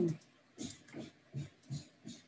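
Computer keyboard keystrokes: four soft, separate taps about a third of a second apart as a short word is typed.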